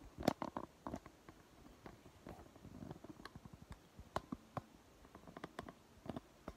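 Scattered light clicks, taps and soft rustling of things being handled and set down on a wooden desktop, with the loudest knocks in a quick cluster at the start.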